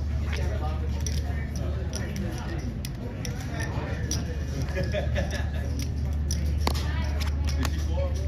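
Indistinct background voices over a steady low hum, with scattered light clicks and snaps from playing cards being squeezed, bent and turned over at a baccarat table.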